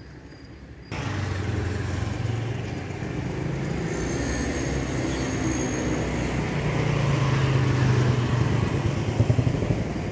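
A motor vehicle engine running close by with a low steady hum, cutting in abruptly about a second in and growing a little louder, with a few quick surges near the end.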